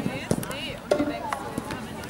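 Players shouting, with several sharp knocks of padded Jugger weapons (pompfen) striking.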